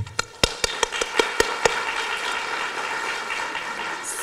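Applause: sharp handclaps close to the microphone through the first second and a half or so, merging into steady clapping from an audience.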